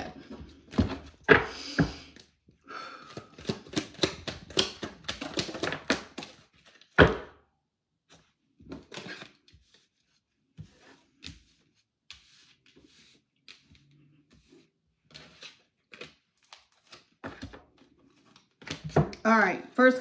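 A deck of tarot cards being shuffled by hand: a rapid run of card flicks and snaps, a single loud thump about seven seconds in, then sparser light taps as cards are handled and pulled.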